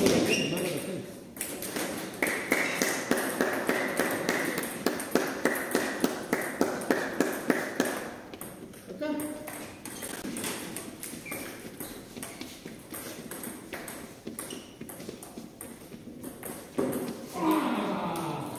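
Table tennis balls clicking off paddles and tables during rallies: a quick run of sharp ticks a few times a second, strongest in the first half, with voices in the hall.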